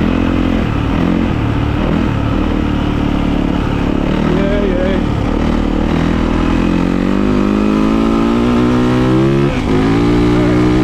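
2019 Yamaha YZ450FX dirt bike's single-cylinder four-stroke engine running at a steady trail speed, then revving higher as the bike accelerates hard over the last few seconds. There is a short dip near the end as it shifts up.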